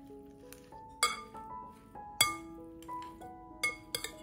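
Metal salad servers clinking against a glass bowl as a leafy salad is tossed: four sharp clinks, one about a second in, one about two seconds in and two close together near the end, over background music with a plucked melody.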